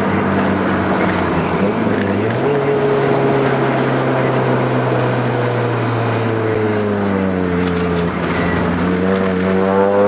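Car engine heard from inside the cabin while cruising, a steady drone whose pitch steps up after about two seconds, drops as the car slows around the turn, then climbs again as it accelerates near the end.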